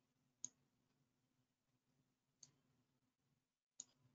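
Near silence broken by three faint, isolated clicks of a computer mouse: about half a second in, a little past two seconds, and near the end.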